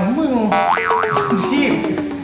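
A comedy sound effect: a springy cartoon boing with its pitch bouncing quickly up and down, then a long tone that slides slowly downward.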